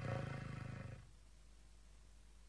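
Vermeulen flute, a straight-blown slide flute, sounding a rough, buzzing low note for about a second, with a fast flutter running through it.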